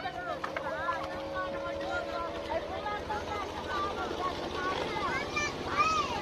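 A small boat's engine running with a steady drone, under indistinct voices.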